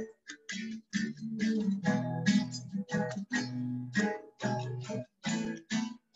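Acoustic guitar strummed in a steady rhythm of about three strokes a second, playing chords between sung lines of a worship song. The sound cuts out briefly a few times, as over a video call.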